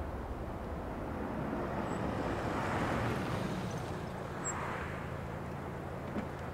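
Range Rover SUV driving along a road, its engine and tyre noise swelling to its loudest about halfway through and then easing slightly.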